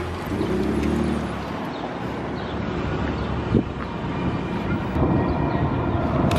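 City street traffic: a steady rumble of vehicles, with a passing engine's hum in the first second or so. A single short knock sounds a little past halfway.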